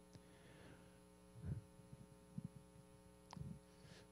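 Near silence: a low, steady electrical hum from the room's sound system, with a few faint, brief sounds.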